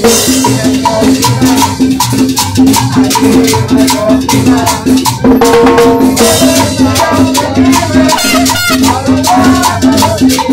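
Live cumbia band playing a dance tune: saxophone over a steady, even percussion beat and a repeating bass line.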